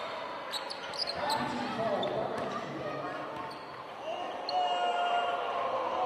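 Basketball game in a gym: the ball bouncing on the hardwood floor, short high squeaks about a second in, and players' and spectators' voices echoing in the hall.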